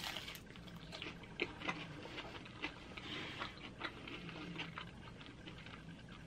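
A person biting into and chewing a slice of crisp flatbread pizza close to the microphone: a sharper bite at the start, then faint, irregular crunches and mouth clicks.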